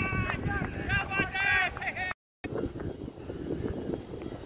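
Players shouting on the cricket field for about two seconds, cut off suddenly. Then wind buffeting the microphone over the open-ground background.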